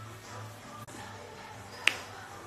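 A single sharp click near the end, over a low steady hum and faint background sound.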